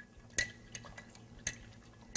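A stirring stick clinking faintly against the inside of a glass jar as iodine solution with dissolved grape seed extract is stirred: a few light, sharp clicks spread across the two seconds.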